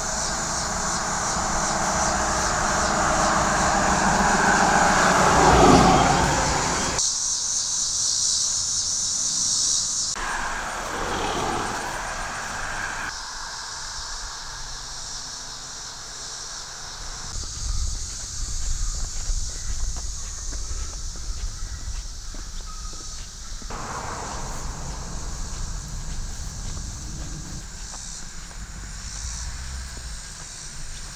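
Cars passing on a road, one sweeping by with a falling pitch, over a steady high chorus of insects. The sound changes abruptly several times.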